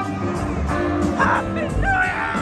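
Live rock band playing, with held bass and guitar notes. Gliding, honk-like tones ride over the music in the second half.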